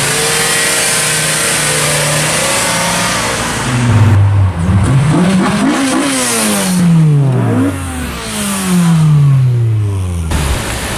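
A Volkswagen T4 van's engine running at a steady note for about four seconds. Then a Honda CRX del Sol's engine is revved up and down several times and pulls away, its pitch falling away near the end.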